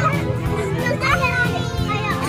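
Children's high voices calling out and chattering, over steady background music.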